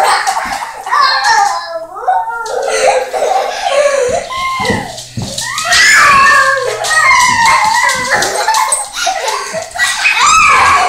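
A young boy squealing and laughing in high-pitched bursts as he plays with a small dog, loudest about six seconds in.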